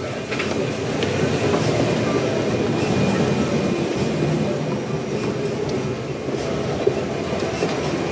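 Rumbling, rattling noise of people climbing an aircraft's interior staircase: footsteps on the stairs mixed with camera handling noise, uneven and continuous.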